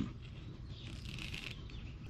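Quiet background with faint birds chirping.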